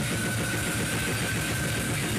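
Slam death metal band rehearsing: fast, dense drumming under down-tuned guitar and bass, with a steady high ringing tone held over the playing until shortly before the end.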